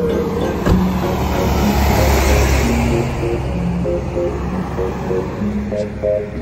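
A lorry passing close by, its tyre and engine noise swelling to a peak about two seconds in and then easing off, under background music with slow held notes. There is a sharp click just under a second in.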